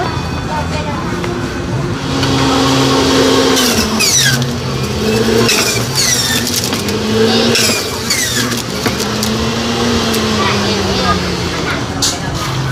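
Electric centrifugal juicer running from about two seconds in, pulping watermelon. Its motor hum dips in pitch and recovers several times as the fruit is pushed down the chute under load.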